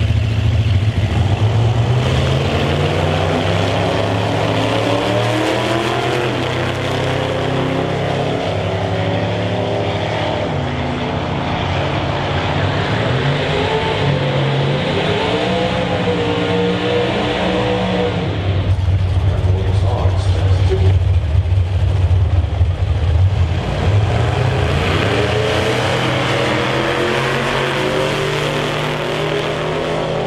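Outlaw Anglia drag cars' race engines running and revving loudly, their note gliding up and down in pitch and loudest a little past the middle.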